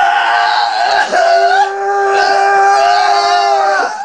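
A young man screaming in long, high, held cries while being tickled and pinned in a leg scissor hold: a short cry, a brief break about a second in, then one long scream of nearly three seconds.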